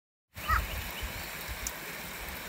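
Woodland ambience with a few faint, short bird chirps and a low rumble on the microphone, loudest just after the sound begins.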